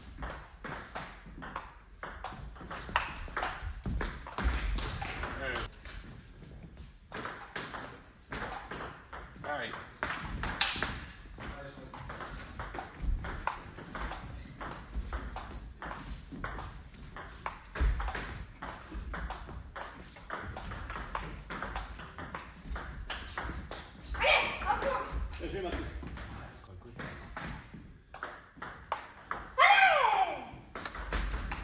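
Table tennis rallies: the ball clicking in quick alternation off the bats and the table, with short breaks between points.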